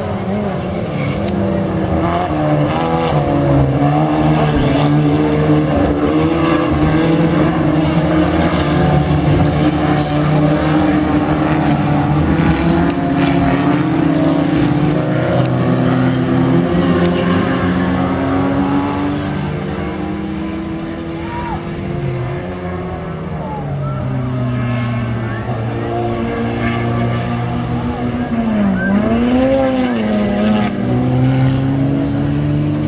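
Several Citroën 3CV race cars' small air-cooled flat-twin engines running hard together at different pitches, rising and falling as the cars accelerate and lift off. The sound dips a little about two-thirds of the way through, then swells again near the end.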